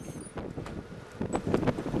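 Wind blowing across the camera microphone: a rough, rushing noise that grows louder and gustier about a second in.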